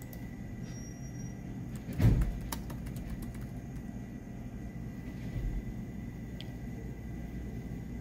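Steady low rumble of room noise with a single low thump about two seconds in, followed by a quick run of computer keyboard clicks and a few scattered keystrokes later on.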